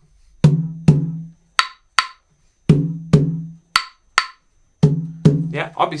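Wooden claves and a conga trading a call and response: two sharp clave clicks, then two ringing open tones on the conga, repeated about three times. A voice comes in at the very end.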